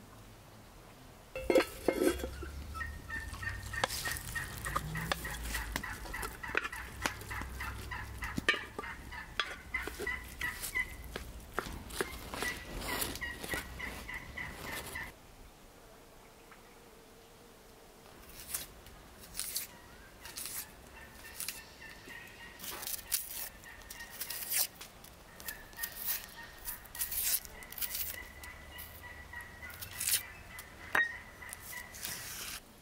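Domestic fowl calling, with rapid repeated calls that are busy and fairly loud for the first half, then stop suddenly about halfway. Quieter, scattered calls follow.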